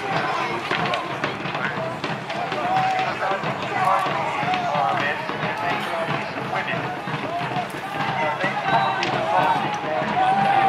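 A mass of men shouting and yelling together as two pike blocks push against each other in a re-enacted battle, no words clear, with scattered sharp clacks through the din.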